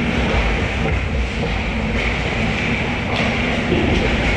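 Ice hockey play heard up close from behind the goal: skates scraping and carving the ice and sticks clacking, over a steady low rumble of rink noise.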